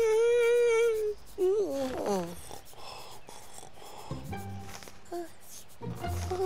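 A man's long yawn: one loud held 'aah' for about a second, then a falling tail, over background music.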